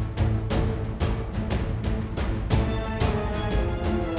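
Background music with a steady beat over sustained low notes.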